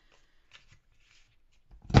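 Paper and cardstock being handled on a wooden craft table, with a sharp knock near the end as the corner punch or cardstock is moved against the tabletop.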